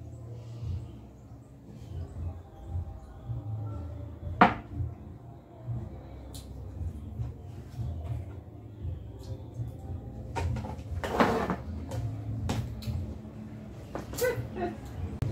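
Objects knocked and set down on a wooden tabletop: one sharp knock about four seconds in, a few lighter clicks, and a brief clatter near the end, over a steady low rumble.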